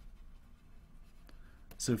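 Faint scratching and light taps of a stylus handwriting a word on a tablet, then a man starts to speak near the end.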